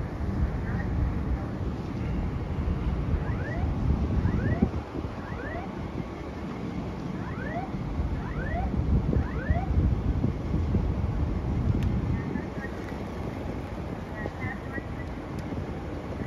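Wind buffeting the microphone, a steady low rumble. About three to ten seconds in, a series of short rising chirps can be heard.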